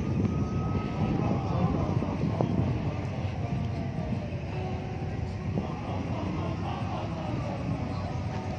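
Outdoor ambience recorded on a smartphone's microphone: a steady low rumble with the distant voices of people gathered around.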